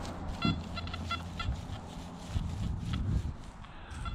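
Nokta Anfibio metal detector giving a quick run of short beeps as its coil is swept over the grass, with a few scattered ones after.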